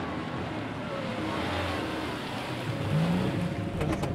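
A classic car driving slowly along a street: steady engine rumble and road noise.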